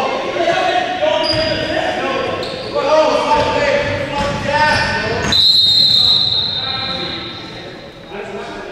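Basketball game in an echoing gym: a ball bouncing on the hardwood floor while players call out. About five seconds in, a steady high-pitched tone starts suddenly and holds for nearly three seconds.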